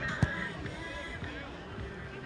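A football kicked once, a single sharp thud about a quarter second in, over faint, distant voices from the pitch and stands.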